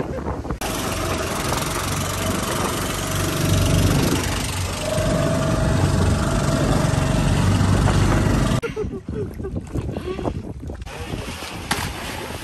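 Outrigger boat's engine running under way, mixed with heavy wind on the microphone and rushing water, a steady low rumble. It stops suddenly about two-thirds of the way through, leaving quieter, patchier outdoor sound.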